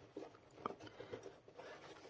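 Faint rustling with a few soft clicks as hands handle and adjust a crocheted cord net bag with a neoprene pouch inside it.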